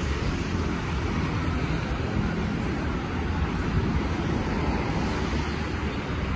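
Steady road traffic noise from the road below: a continuous low rumble of engines and tyres with a hiss over it, no single vehicle standing out.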